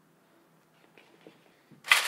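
Near silence with a few faint light clicks, then near the end a sudden rustle of baking paper being pressed into a baking pan.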